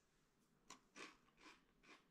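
A few faint, short crunches of someone chewing a mouthful of muddy buddies, crisp rice Chex coated in chocolate, peanut butter and powdered sugar.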